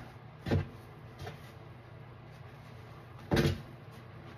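Soapy kitchen sponges squeezed by gloved hands in a plastic basin of foam: two short wet squelches, the first about half a second in and the second just after three seconds, with a fainter one between. A low steady hum runs underneath.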